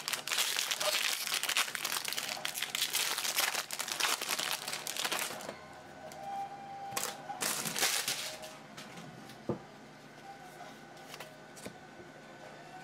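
Baseball card pack wrapper being torn open and crinkled by hand, a dense crackling for about five seconds. A few shorter crinkles follow around seven to eight seconds in, then quieter handling of the cards.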